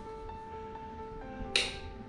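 Background music with soft held notes, and a single sharp click about a second and a half in from a wall light switch being pressed.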